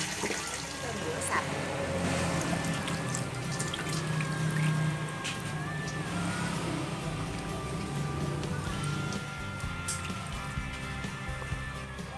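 Background music with long held notes, over water trickling and splashing as hands rinse fish and straw mushrooms in water.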